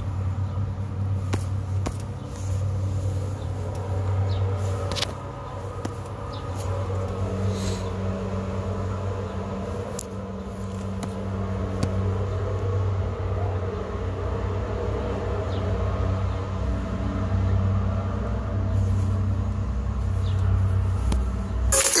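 A steady low rumble with a few faint clicks scattered through the first half.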